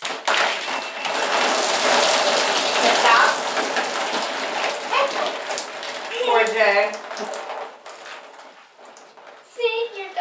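Water poured slowly from a plastic container onto a man's head, splashing and spattering down over his body to the floor. It is a steady splashing that tapers off after about six seconds.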